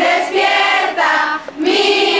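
A group of high, mostly women's voices singing together in held notes, with a brief break for breath about one and a half seconds in.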